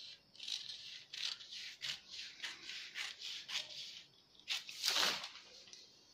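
Scissors snipping through newspaper along a drawn pattern line, a quick run of short cuts about three a second, with a longer, louder rustle of paper about five seconds in.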